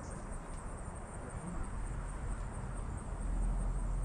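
Steady outdoor background hiss with a faint, high insect trill running through it, and a low rumble that grows louder about three seconds in.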